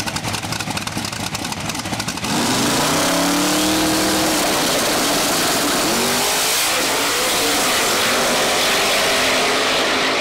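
Two drag racers on the starting line, a turbocharged car and a Chevy S10 pickup. Their engines crackle in a rapid stutter for the first two seconds, typical of engines held on a launch limiter to build boost. About two seconds in they launch at full throttle, running loud, with the engine pitch rising and then dropping back at the gear changes.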